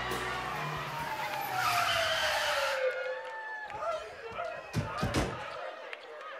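Backing music breaks off and a long whistle-like comedy tone slides steadily down in pitch over about three seconds, with a burst of audience noise partway through. Then come two thumps a little under half a second apart, about five seconds in.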